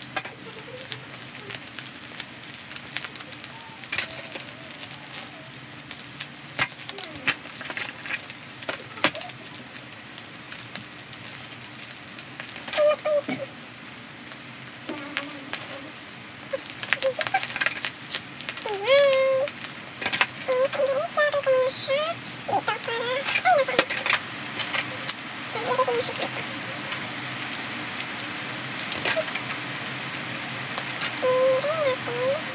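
Paper and sticky tape being handled at a table: scattered crackles and sharp clicks of paper rustling and tape being worked off the roll. Faint children's voices join in the second half.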